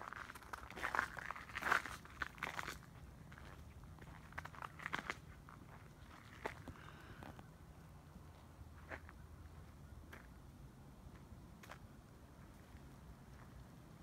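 Footsteps crunching in fresh snow about four to five inches deep, a quick irregular run of crunches in the first three seconds and again around five seconds in, then only occasional faint ones.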